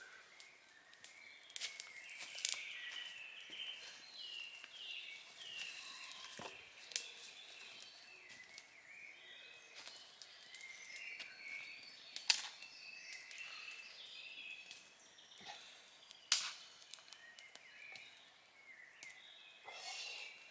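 Woodland birds singing, several overlapping songs throughout, with a few sharp cracks among them, the loudest about twelve and sixteen seconds in.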